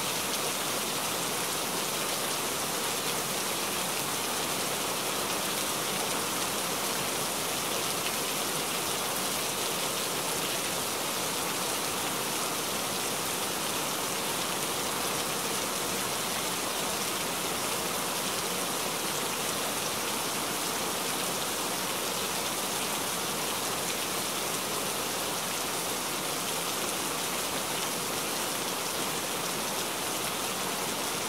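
Steady rain falling, an even hiss of many drops that does not change.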